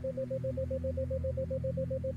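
A 7 Hz isochronic tone: a single steady tone near 528 Hz pulsing on and off about seven times a second, over a low sustained drone of ambient background music.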